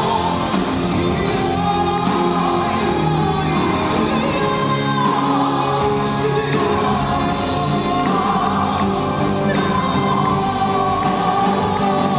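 Live symphonic-metal band playing loud and without a break, with a female lead vocalist singing long-held notes over keyboards and electric guitars, recorded from the audience.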